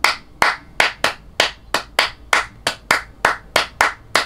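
Hand claps in a brisk rhythm of about three claps a second, accented in groups of three, three and two: the tresillo pattern that forms part of the clave rhythm.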